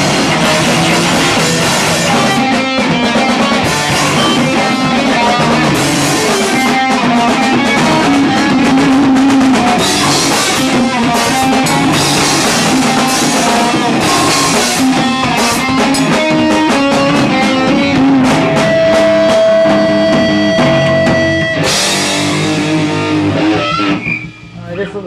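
A rock band playing live: electric guitars and a drum kit, loud and dense, with one held high note for about three seconds near the end. The song stops abruptly at the very end.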